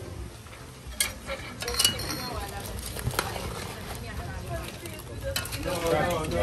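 Metal utensil stirring and clanking against a steel pot of crayfish cooking over charcoal, with sharp clinks about one, two, three and five seconds in.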